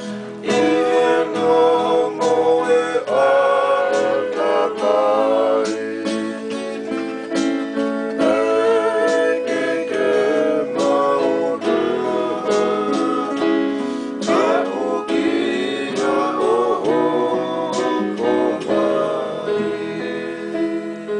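Men singing a Tongan kava-club song (hiva kava) together, accompanied by a strummed guitar and an electronic keyboard.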